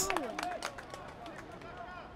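Faint live sound of a football pitch: distant players' voices and calls, with a few light knocks, over a quiet outdoor background.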